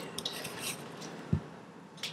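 A blunt kitchen knife working slowly through a green apple on a cutting board, with faint short scraping strokes and a single low thump about a second and a bit in.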